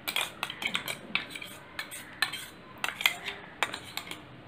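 Metal utensil clinking and scraping irregularly against a stainless steel strainer and cup while freshly ground pulp is pressed through the sieve to strain out its juice.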